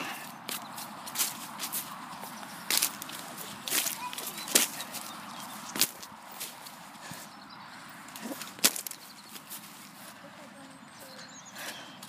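Footsteps through grass, irregularly spaced, with several sharper clicks and knocks among them.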